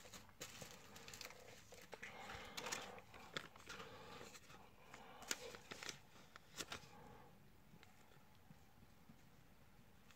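Faint crinkling and small clicks of a thin plastic card sleeve being handled as a trading card is slid into it, dying away over the last few seconds.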